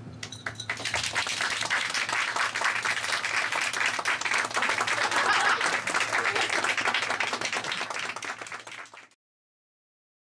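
A small audience applauding: the clapping starts about half a second in, swells quickly and stays steady, then cuts off abruptly about a second before the end.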